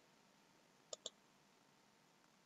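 A quick double click of a computer mouse button, two sharp clicks about a tenth of a second apart, about a second in, against near silence.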